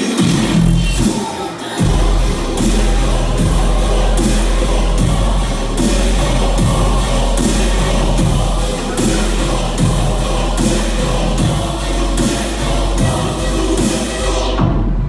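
Bass-heavy electronic dance music played loud over a venue sound system. The deep bass drops out briefly and comes back in about two seconds in, and a steady drum beat runs under it.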